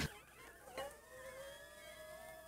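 A pancake pressed flat under a spatula on a hot electric crepe maker gives off a faint, thin squeal, a "crying" sound. It starts about three-quarters of a second in and slowly rises in pitch.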